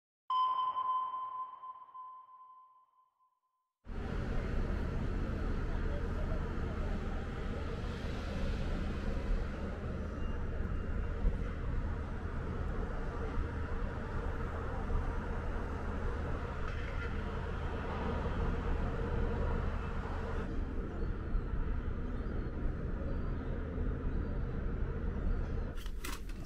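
A single electronic ping, a clear bell-like tone that rings and fades over about three seconds, accompanying the map-pin graphic. After a brief silence comes a steady outdoor background of low hum and hiss from the ship's balcony over the harbour.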